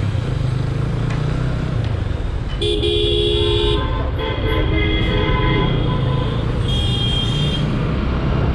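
Vehicle horns honking in road traffic over the low, steady rumble of a motorcycle being ridden. A loud honk lasting about a second comes about two and a half seconds in. A longer, quieter honk follows, then a short higher one near the end.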